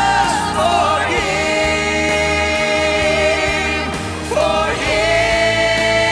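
Live worship music: a male lead vocalist sings long held notes with vibrato into a handheld microphone, over band accompaniment and backing vocals. The first long note breaks off just before four seconds in, and a new one is held from just after.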